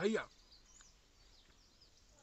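A man's voice trails off just after the start, then quiet outdoor background with a few faint, high bird chirps.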